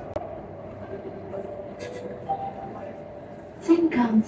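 Cabin noise of a C751C MRT train running into a station: a steady rumble with a faint steady whine. A spoken onboard announcement begins near the end.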